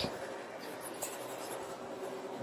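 Faint rustling and rubbing handling noise, with a soft click at the start and another about a second in.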